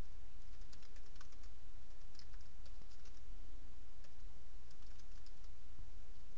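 Typing on a computer keyboard: faint, irregular key clicks over a steady low hum.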